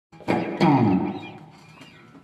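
Yamaha Revstar RS320 electric guitar: two chords struck about a quarter second apart, then a downward pitch slide that fades away.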